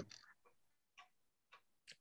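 Near silence: room tone on a video call, with a few faint, short clicks spread across the pause.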